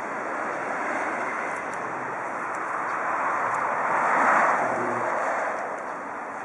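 Outdoor background noise with a vehicle passing on a nearby road, swelling to its loudest about four seconds in and then fading.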